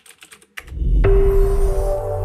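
A few quick keyboard-typing clicks. About half a second in, a deep low whoosh opens into electronic music, and a held synth note comes in at about one second.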